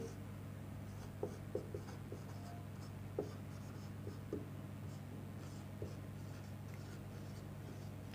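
Marker pen writing on a whiteboard: faint, short strokes scattered across several seconds, over a steady low hum.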